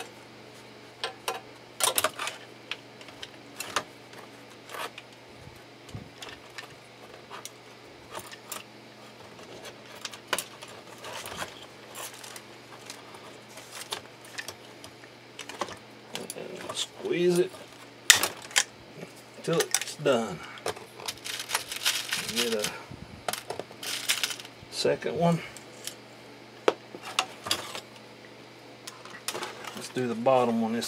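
Irregular clinks and ticks of small metal parts being handled: a rivet, the metal inside plate and the steel blade pieces of a leather glove. There is a busier clatter a little past the middle, with a steady low hum underneath throughout.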